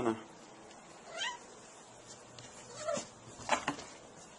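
A domestic cat meowing twice, two short falling calls about a second in and just before three seconds, followed by two quick sharp sounds.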